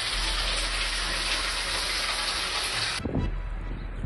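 Steady rushing hiss of spraying water, cutting off suddenly about three seconds in.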